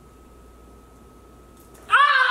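A faint steady high tone, then near the end a woman's voice breaks into a loud, high-pitched squeal that rises in pitch.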